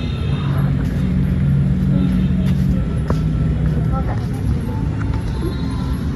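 Outdoor background noise: a steady low rumble with a low hum through the first half, and faint voices of other people in the background.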